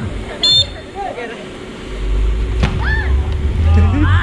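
People shouting and shrieking during a game of bubble football: a short high-pitched shriek about half a second in and more calls near three seconds, with one sharp knock in between, over a low rumble.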